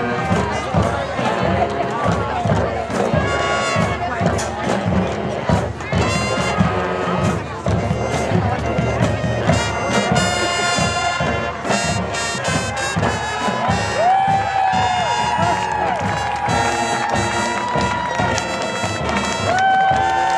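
Marching band playing: brass over a drumline with dense, rapid drum strokes, moving into long held brass chords in the second half.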